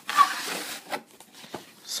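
A hard plastic display case being pulled out of a cardboard box, scraping and rubbing against it for about a second, with a brief squeak near the start. A few faint knocks follow.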